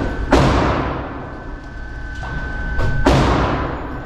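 Two shots from a Rock Island Armory full-size high-capacity 10mm pistol, fired one-handed, about three seconds apart. Each report is followed by a long echoing tail in the indoor range.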